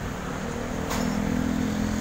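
A vehicle engine running steadily with an even hum that sets in about half a second in, with one short click about a second in.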